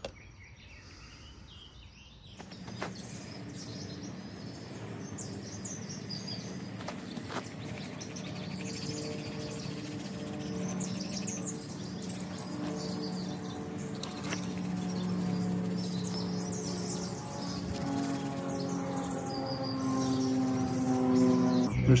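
Small birds chirping and calling, over a steady low drone of held tones that shifts in pitch a few times and grows gradually louder.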